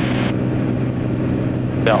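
Light aircraft's engine and propeller drone at cruise, a steady low hum heard inside the cockpit.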